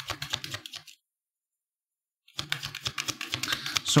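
A deck of tarot cards being shuffled by hand: quick, light clicking and rustling of card stock. It breaks off about a second in for a second of dead silence, then resumes.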